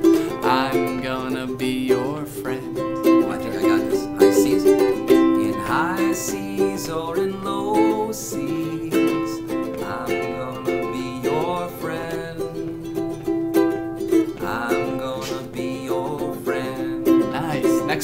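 Ukulele strummed in a steady chord accompaniment, with a man's voice singing phrases over it every few seconds.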